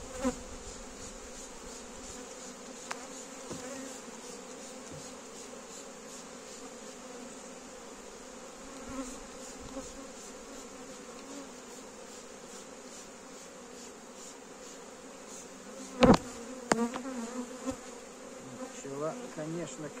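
Honeybees humming steadily from an open hive full of bees, the even buzz of a calm, strong colony being worked without smoke. About sixteen seconds in comes a sharp knock, the loudest sound, followed by a few lighter clicks.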